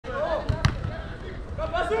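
Players' voices calling out across a small-sided football pitch, with one sharp thud of the football being struck about two-thirds of a second in, and a laugh at the end.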